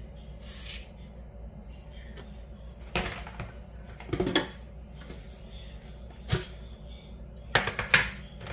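Rolled oats pouring from a measuring cup into a mixing bowl in a brief hiss about half a second in, followed by several sharp knocks and clatters of kitchen utensils and containers being handled.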